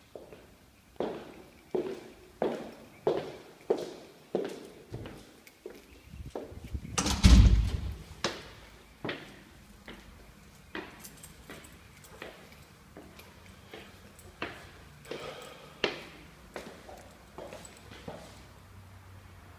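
Footsteps on a laminate wood floor, about one and a half steps a second, then continuing less evenly up laminate-covered stairs. A loud thump with a low rumble comes about seven seconds in.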